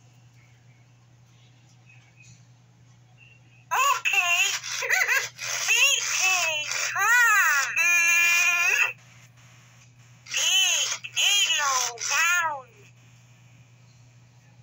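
1999 Autumn Furby talking in its high, warbling electronic voice. It babbles for about five seconds starting around four seconds in, ending on a buzzy drawn-out sound, then gives a shorter burst of babble a second later.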